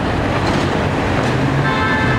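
Steady rumble of city road traffic.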